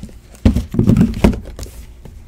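Cardboard trading-card hobby boxes being picked up and knocked against each other and the table: several dull thumps and knocks in quick succession, starting about half a second in.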